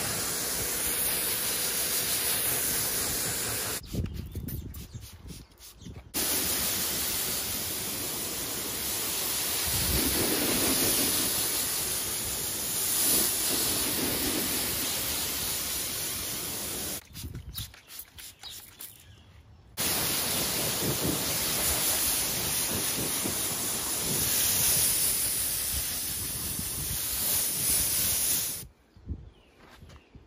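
Pressure washer's jet of water spraying onto car body panels, a steady hiss. It stops briefly twice, about four seconds in for two seconds and at about seventeen seconds for nearly three, then cuts off shortly before the end.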